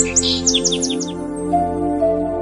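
Calm instrumental background music with long held chords, with a small bird's quick run of short high chirps over it in the first second.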